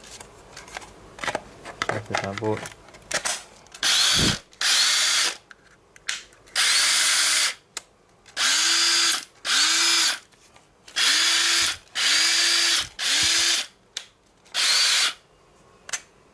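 Hilti SFH 144-A cordless drill driver's motor run in about nine short trigger pulls, each spinning up with a rising whine and running for half a second to a second. It is being test-run on a Makita-style slide battery through a home-made adapter. A few handling clicks come before the first pull.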